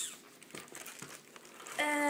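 Clear plastic packaging bag crinkling as it is handled, in sharp irregular crackles, with a short burst at the start. A boy's voice begins just before the end.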